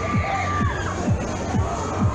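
Riders screaming on a fairground thrill ride over loud techno music played by the ride, with a steady kick-drum beat about two a second. One long high scream stands out in the first half.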